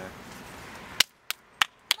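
Four sharp clicks about a third of a second apart, coming after about a second of faint outdoor background that drops away at the first click.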